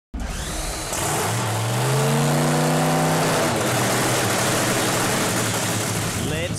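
Supercharged nitro V8 engine of a nitro funny car running loud. About a second in its pitch rises and holds for a couple of seconds, then sinks back into a rough, noisy din.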